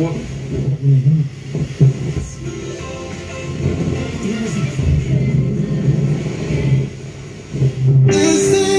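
Music from a radio broadcast playing through a Telefunken Opus 2430 tube radio and its Telefunken RB 45 speaker boxes.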